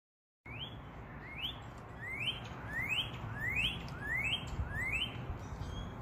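Northern cardinal singing, starting about half a second in: about seven clear whistled notes, each sliding upward, repeated evenly a little under a second apart, over a low background rumble.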